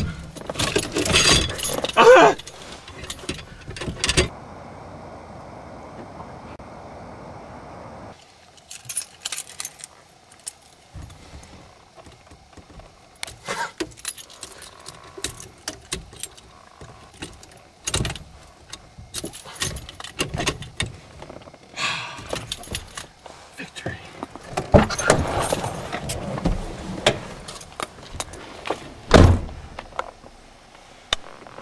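Hard metal steering-wheel lock clanking and rattling against a car's steering wheel as it is handled and fitted, with keys jangling, and a loud thump near the end.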